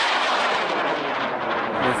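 High-power rocket motor burning as the rocket climbs: a loud, steady rushing noise. A man's voice cuts in near the end.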